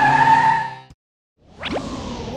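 The children's song's music ends on a held synth note and fades out within the first second. After a brief silence, a cartoon whoosh sound effect with a rising pitch comes in for a race car speeding off in a cloud of dust.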